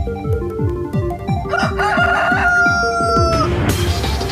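A rooster crows once, one long call lasting about two seconds from a little over a second in, over electronic music with a steady kick-drum beat. A bright crash of noise comes in near the end as the music moves on.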